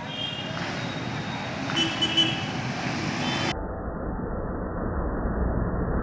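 Road traffic noise, with vehicles running past and short high beeps near the start and about two seconds in. From about three and a half seconds the sound turns dull and is taken over by a steady low rumble.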